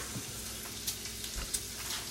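Bacon frying in a pan, a steady sizzle, with a few light knife taps on a wooden cutting board as a green bell pepper is sliced.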